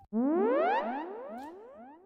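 Electronic sci-fi sound effect answering the command "Computer, end program": a shimmering cluster of rising pitch sweeps that starts suddenly and fades away over about a second and a half, signalling a holodeck-style program shutting off.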